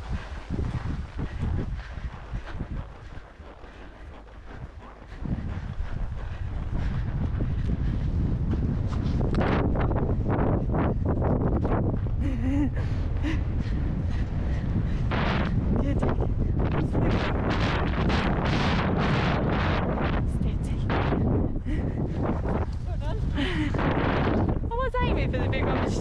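Wind buffeting a helmet camera's microphone as a horse canters across grass, loud and steady from about five seconds in, with the rhythmic beat of its strides.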